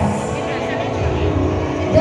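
A host's voice over a public-address system, with music playing underneath.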